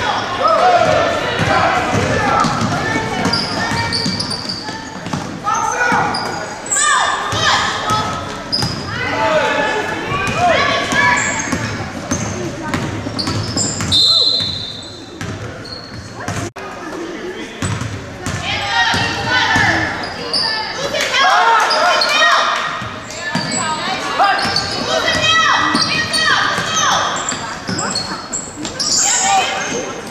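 Basketball game sounds in an echoing school gym: the ball bouncing on the hardwood court and voices shouting and calling out throughout. About halfway through, a short shrill tone sounds, fitting a referee's whistle stopping play for free throws.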